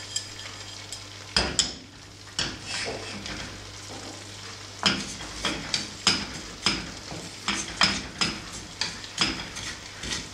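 Sesame seeds toasting dry in a nonstick skillet, rustling and sliding across the pan as it is shaken and stirred with a wooden spatula. The strokes come as short swishes, irregular at first and about two a second from about five seconds in.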